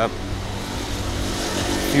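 Steady city traffic noise: a low engine hum under an even hiss.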